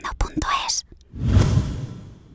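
Logo sting sound effect: a quick run of sharp, breathy whisper-like bursts in the first second, then a swelling whoosh that peaks about halfway through and fades away.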